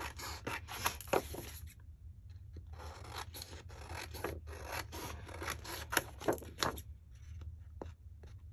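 Paper being trimmed: white border strips cut off a sheet of lace-patterned paper. Short snips and paper rubbing come in an irregular run, with a brief lull about two seconds in.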